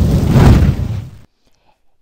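Sound effect of a blast of dragon fire: one loud burst of rushing noise, deep and heavy, that swells and fades out after just over a second.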